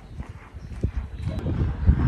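Footsteps on wooden boardwalk planks, dull hollow thuds roughly once a second that grow louder after the first second.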